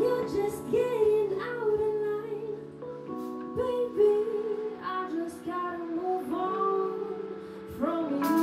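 Live indie band in a quiet passage: a woman sings a wavering melody over held chords from the band, with little drumming.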